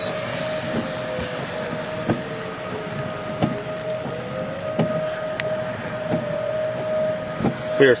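Outdoor civil-defense tornado sirens wailing for a tornado warning: a steady held tone with a second siren's pitch slowly falling and rising beneath it, heard from inside a car. Soft regular knocks come about every second and a half.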